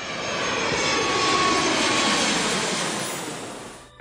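Jet airliner passing overhead: a rushing engine noise that swells to a peak about two seconds in and then fades away.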